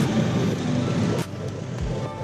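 Street traffic with a car running close by, a dense low rumble that cuts off abruptly about a second in. Quieter background music with steady held notes follows.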